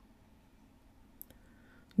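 A few faint, sharp clicks a little past a second in, over near-quiet room tone.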